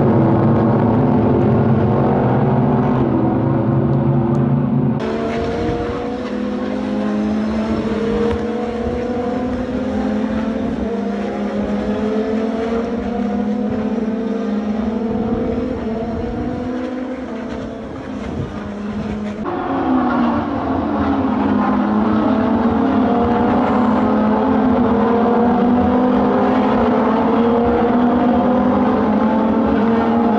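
A pack of SUPER GT race cars running one after another, their engines rising in pitch over and over as they accelerate up through the gears, several cars overlapping at once. The sound changes abruptly twice, about five seconds in and again near twenty seconds.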